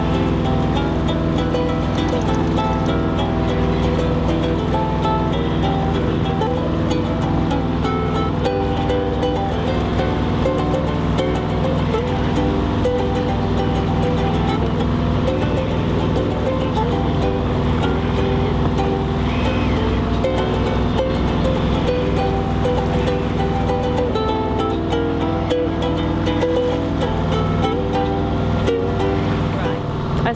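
Ukulele being strummed and played as a tune, with the steady low drone of the sailboat's engine running underneath.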